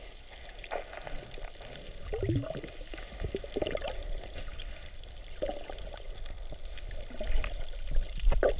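Water sloshing and gurgling, heard muffled through a camera held underwater, with irregular bubbly bursts every second or two over a low rumble.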